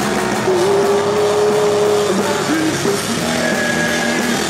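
Punk rock band playing live: distorted electric guitar, bass guitar and drums, loud and dense, with one note held for about a second and a half near the start.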